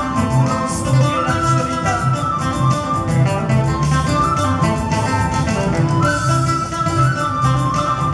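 Ayacucho huayno played live by a guitar band, with no singing: acoustic and electric guitars pick the melody over an electric bass at a steady, even beat.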